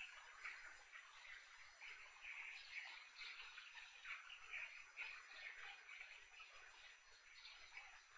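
A large crowd applauding, heard faintly as a steady, even clatter of many hands clapping.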